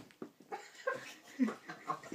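A person's stifled laughter in short, irregular bursts.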